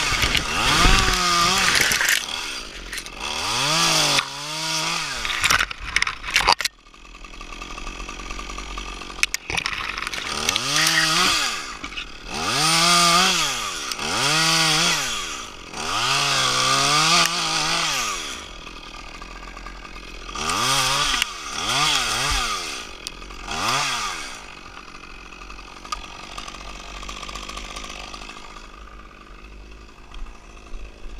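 Small top-handle chainsaw revving up and down in about ten short bursts as it cuts branches off a spruce trunk. It settles to a steady idle for the last few seconds.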